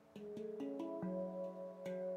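Veritas Sound Sculptures stainless-steel handpan in F♯ pygmy, 18 notes, played by hand: a quick run of about five struck notes in the first second, then another note near the end, each tone ringing on and overlapping the last.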